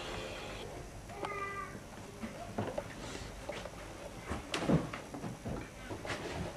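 A brief high squeak about a second in, then scattered soft knocks and thumps, the loudest shortly before the end.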